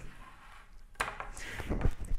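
A diffusion panel's fabric being snapped onto its collapsible round frame: one sharp click about a second in, then light handling noise of the frame and fabric.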